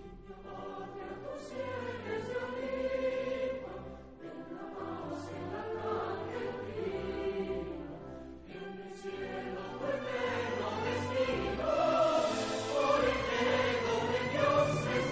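Background music: a choir singing long held phrases over an orchestral accompaniment, swelling louder in the last few seconds.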